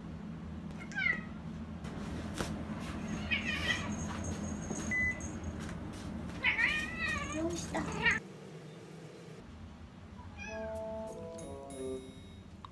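A ginger domestic cat meowing several times, short rising-and-falling calls spaced a few seconds apart, the longest a little past the middle.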